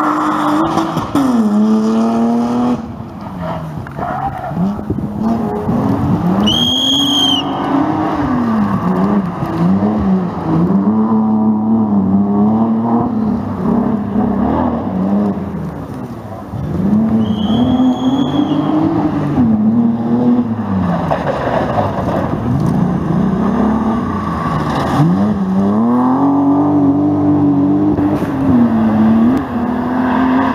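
Rally cars' engines revving hard, rising and falling again and again through gear changes as the cars brake, corner and accelerate away. Two brief high-pitched squeals come about 7 and 18 seconds in.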